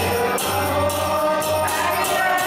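Kirtan: a group singing a devotional chant together, with hand cymbals jingling in a steady beat.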